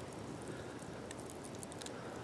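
Quiet outdoor background: a faint steady hiss with a few soft scattered ticks.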